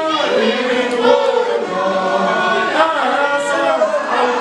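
A group of voices singing together, without a clear beat or instruments standing out.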